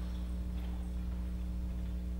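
Steady low electrical mains hum with faint room noise, and no singing or playing.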